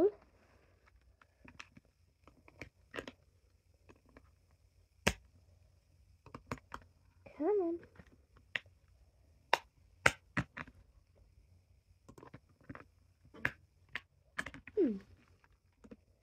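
Small scissors snipping and clicking as tiny metal parts are cut out of their sheet: scattered sharp clicks, a dozen or so spread irregularly, with a short hum about seven seconds in and a brief falling vocal sound near the end.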